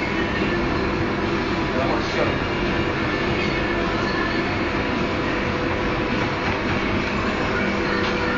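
Steady running noise of commercial kitchen machinery, the overhead extractor hood and conveyor pizza ovens, with a constant low hum.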